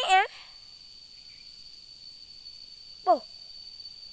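A voice calls out briefly at the start and again a little after three seconds in. Between the calls there is a steady high-pitched insect drone over outdoor background noise.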